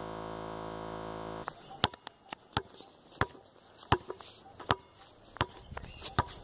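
A basketball dribbled on a concrete court: sharp, evenly paced bounces about three every two seconds, starting a little under two seconds in. Before the bouncing, a steady buzz for about a second and a half cuts off suddenly.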